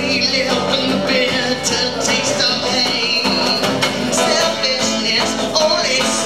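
Acoustic guitar playing an instrumental passage of a live song, with a long held high melody line over the strummed chords.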